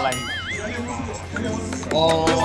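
Background music with a short wavering, whinny-like sound effect in the first second, its pitch wobbling up and down.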